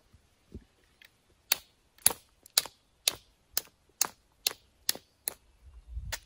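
Sharp, evenly spaced clicks of a knapping tool worked against the edge of a flint piece, about two a second and some nine in a row, as the edges are abraded to prepare striking platforms for flaking.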